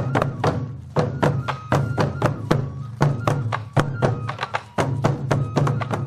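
Sansa odori music: hand-carried taiko drums struck with sticks in a quick, uneven rhythm of several hits a second, over a steady low drone with a few thin held tones above.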